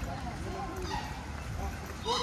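Background voices of people talking, indistinct and at a distance, over a steady low outdoor rumble.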